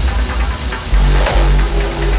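Hands Up electronic dance track at a break in the beat: about a second in, a deep held bass and sustained synth chords come in.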